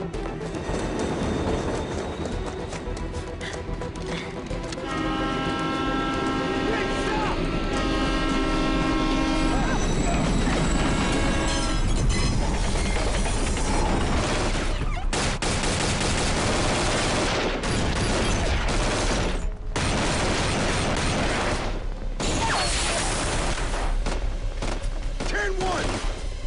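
Scored action-drama soundtrack. A train passes with two long blasts of its horn, then heavy gunfire of many rapid shots fills the second half, with music underneath.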